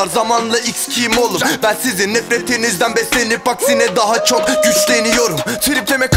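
Turkish hip-hop track: rapping over a beat of crisp hi-hat-like percussion, with little deep bass. A long held tone sounds near the end.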